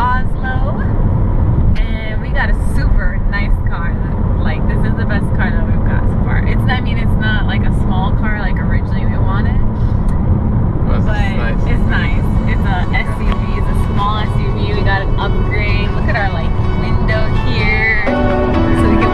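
Steady road and engine noise inside a moving car's cabin, with a woman's voice and music over it.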